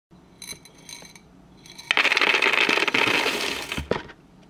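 A few light metallic clinks, then about two seconds in a loud rush of many small metal pieces pouring and rattling onto a hard surface, thinning out and ending with a dull knock.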